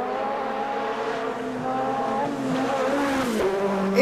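Group B rally car engine running hard at high revs on a gravel stage. Its note holds steady, then drops in pitch near the end as the car passes close.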